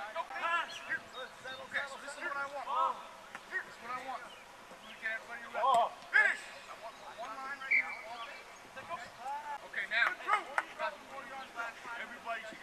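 Men's voices shouting at a distance across an open field, calls and instructions too far off to make out, with one sharp click a little before the middle.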